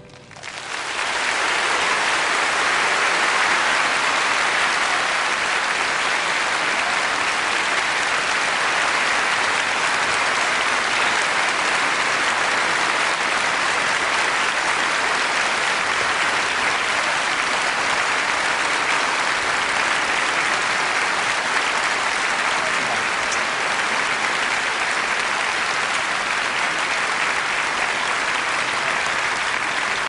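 Concert-hall audience applauding, building up within the first second and then holding steady.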